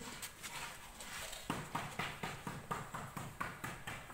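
Footsteps on hard paving, brisk and even, about three or four steps a second, starting about a second and a half in.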